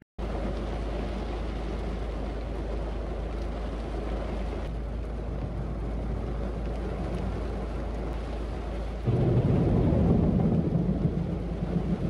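Heavy rain falling on a parked car's roof and windows, heard from inside the cabin as a steady hiss. About nine seconds in it grows louder and deeper.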